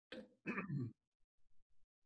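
A man clearing his throat in two short bursts within the first second: a brief one, then a longer, louder rasp.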